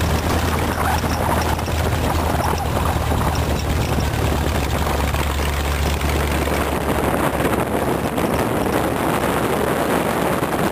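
Open rat-rod roadster's engine running as the car drives across rough ground, heard through wind buffeting the microphone. The low engine drone eases back about two-thirds of the way through.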